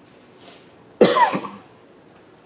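A single loud cough about a second in, sudden and short.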